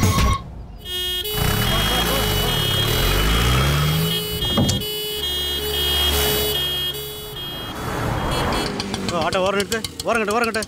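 An ambulance driving past with its siren sounding in repeated steady tones over the engine noise of the passing vehicle, with a single sharp hit about halfway through. Wavering voice-like sounds come in during the last second.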